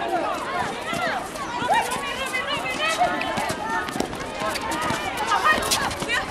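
Several voices calling out and chattering across an outdoor netball court, none of it clear words, with short sharp footfalls and scuffs of players running on the hard court surface.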